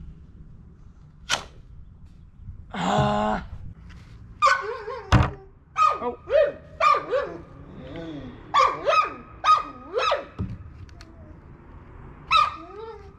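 A dog barking repeatedly in short calls through the second half, with a sharp snap about a second in and a heavy thunk about five seconds in.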